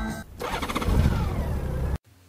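Rock concert music cuts off, then an engine starts and runs briefly.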